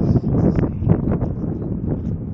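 Wind noise on the microphone: a low rumble with scattered short rustles and knocks.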